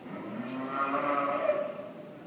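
A cow mooing: one long call that swells and fades, loudest in the second half.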